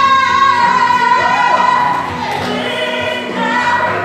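A woman singing solo. She holds one long high note for about the first two seconds, then moves on through the melody.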